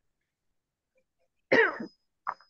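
A person clearing their throat once, a short loud burst near the end after near silence.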